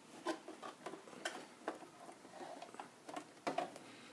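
Light, irregular clicks and taps of hard plastic as an AquaClear 110 hang-on-back aquarium filter and its in-tank media basket are handled.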